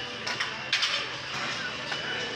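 Background music in a gym, with a few sharp knocks and a brief, louder clatter just under a second in.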